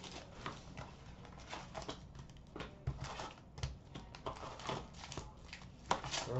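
Faint rustling and light tapping of hockey trading cards and their cardboard box and paper inserts being handled and sorted, with two soft knocks about three seconds in.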